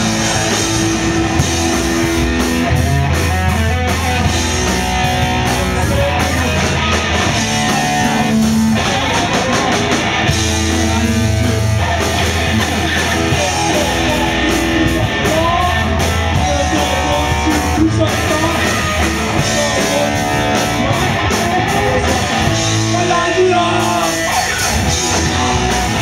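A hardcore punk band playing live and loud: distorted electric guitar, bass and drum kit, with vocals over the top.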